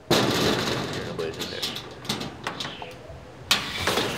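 A garden shed's panel door rattling and clattering as it is pushed and tried while locked, with a few short knocks and a sharp clack about three and a half seconds in.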